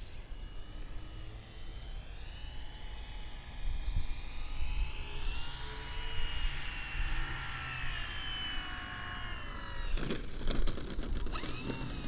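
Electric motor and 15x8 wooden propeller of a large RC plane (Avios Grand Tundra) whining in flight, with flaps down, the pitch rising through the middle and falling again. Wind rumble on the microphone runs underneath, and a brief burst of crackling noise comes about ten seconds in.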